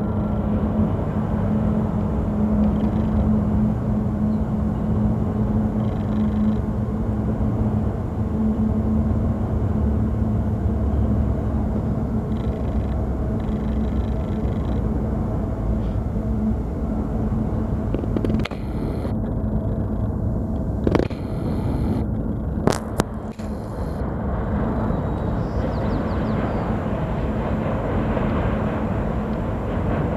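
Union Pacific doublestack intermodal freight train rumbling across a steel truss bridge, a steady low rumble with a steady hum over it for the first half. A few sharp clicks come in the second half.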